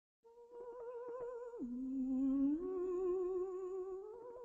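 Solo soprano voice singing long held notes with a wide vibrato: a high note drops about an octave about a second and a half in, then steps up partway about a second later and is held.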